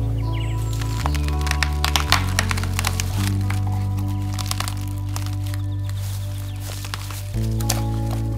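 Dead branch cracking and splintering as it is levered against a stump, in a rapid run of sharp cracks from about a second in, with a few more later. Background music with slow sustained chords runs underneath.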